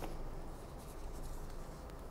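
Sheets of paper being handled and shuffled on a desk, a faint rustling.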